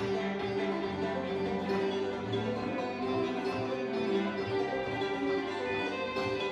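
Live bluegrass instrumental break: a fiddle bowing the melody over banjo picking, with low notes moving underneath.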